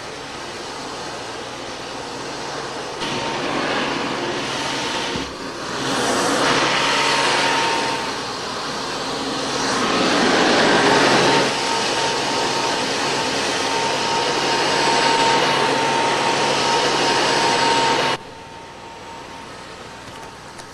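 Upright vacuum cleaner running with a steady whine, growing louder about six seconds in and loudest around ten seconds, then cut off suddenly near the end.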